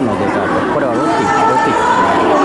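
Crowd chatter: many people talking at once in a large indoor hall, a steady mix of overlapping voices.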